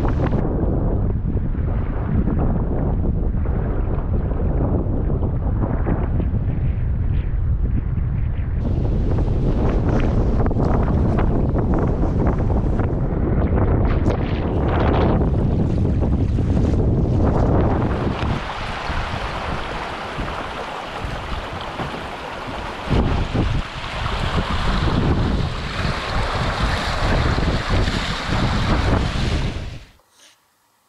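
Strong wind buffeting the microphone, with choppy waves slapping around a canoe. About two-thirds of the way through, the low wind rumble drops away and a brighter splashing of shallow water takes over.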